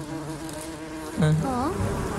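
A steady buzzing hum that stops a little over a second in.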